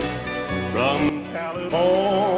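A country song performed live: a man sings over the band, with a short phrase about two-thirds of a second in and a long note with vibrato starting near the end.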